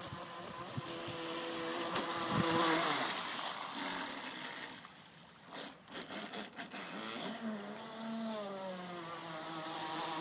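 Brushless motor of a Super Hawaii RC boat, direct drive, whining as the boat runs on the water, its pitch falling and rising with throttle; loudest about three seconds in, fading briefly around halfway. The propeller is too big for the motor to swing properly.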